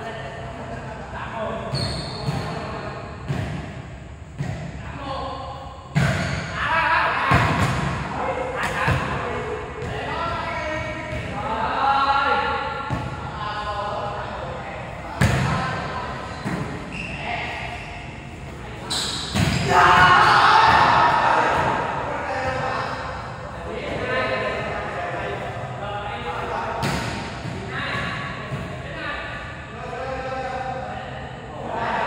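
A volleyball being struck and smacking the court floor, several sharp hits a few seconds apart that echo in a large indoor hall, among players' shouts and calls.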